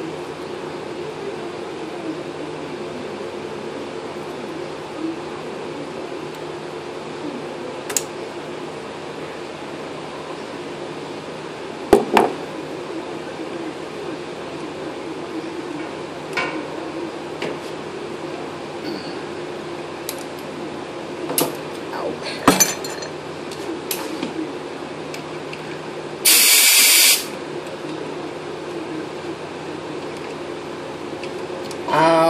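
Scattered clicks and knocks of the air hose reel's fittings being handled over a steady machine hum. Near the end comes about a second of loud compressed-air hiss as air is let through the reel's inlet, fitted with new O-rings.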